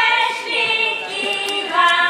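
Women singing together, holding notes that change pitch every half second or so.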